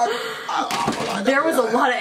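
A man's loud exclamation running into speech, with a single thump a little under a second in.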